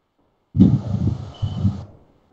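A sudden burst of rough, loud noise starting about half a second in and lasting just over a second, heaviest in the low range with an uneven throb, then cutting off abruptly.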